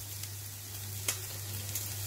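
Vegetables sizzling as they fry in a kadai, a steady hiss with a low hum underneath and one sharp click about a second in.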